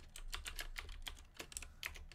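Computer keyboard typing: a quick, irregular run of key clicks as a short spreadsheet formula is entered.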